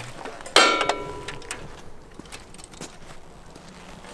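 A single metallic clank with a short ringing decay about half a second in, then faint clicks and handling noises from a BSA trials motorcycle being readied for a kick-start. The engine is not yet running.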